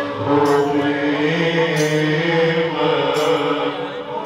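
Male voices chanting a Maulid qasida, a lead voice on a microphone holding long notes over a violin accompaniment. A short sharp hit sounds about once every second and a quarter.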